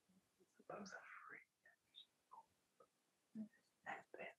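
Near silence: room tone, with faint whispering about a second in.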